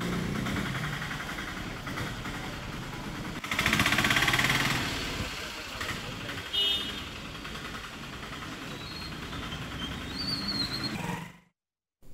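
Outdoor street noise with engine and road sound from passing traffic, loudest as a vehicle goes by about four seconds in. A few brief, faint high tones come later.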